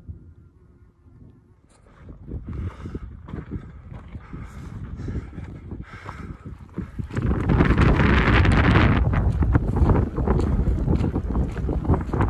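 Wind buffeting the microphone outdoors ahead of a storm, light at first, then gusting much louder in the second half.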